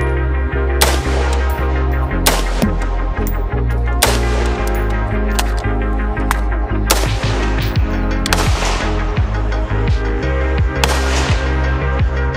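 Background music with a steady bass line, with single shots from a V Seven lightweight AR-15 rifle cutting through it at irregular intervals of one to three seconds.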